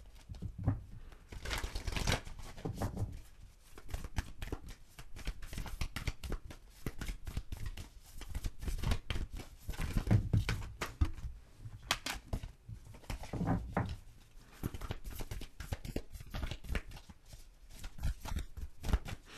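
Oracle cards being shuffled by hand: a continuous patter of soft card clicks and rustles, louder about two, ten and thirteen seconds in.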